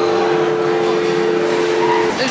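A steady two-note tone, two pitches held together, sounding as an edited-in sound effect. It stops suddenly at the end.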